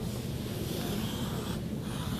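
Pencil strokes scratching across a large sheet of drawing paper, a soft scratchy hiss that stops for a moment near the end.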